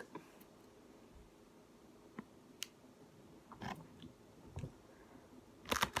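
Faint chewing of soft marshmallow candy: a mostly quiet stretch with a few scattered soft mouth clicks and smacks.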